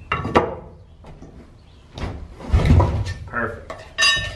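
Metal flat bar clinking down, then a heavy wooden timber block thudding onto a wooden door sill and scraping as it is shifted into place.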